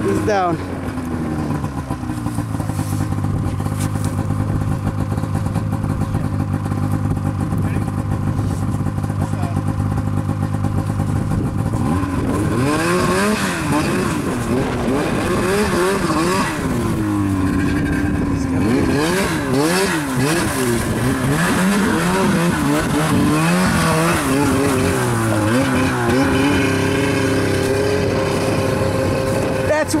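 Ski-Doo snowmobile's two-stroke engine held at high revs, then revving up and down repeatedly from about twelve seconds in, working under load as the sled is stuck in slush.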